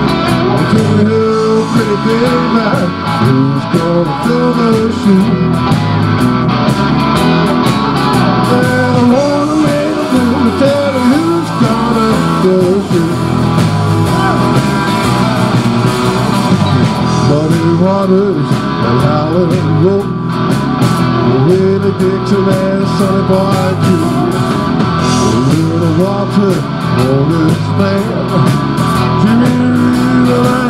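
Live rock band in an instrumental break: an electric guitar plays a lead line full of bent and sliding notes over bass and drums with steady cymbal strokes.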